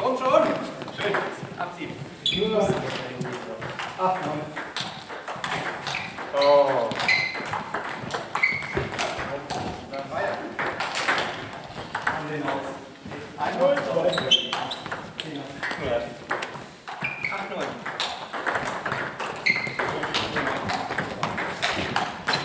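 Table tennis ball being played in rallies: repeated sharp clicks as the celluloid ball strikes the rubber of the bats and bounces on the table, coming in quick runs with short gaps between points. Voices are heard alongside.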